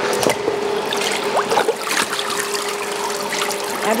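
Papermaking mould and deckle dipped into a vat of watery pulp and lifted out, water splashing and trickling off the screen back into the vat in many small drips.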